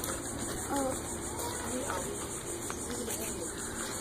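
Faint, indistinct voices of adults and children over a steady background hiss of open-air ambience, with no single loud sound.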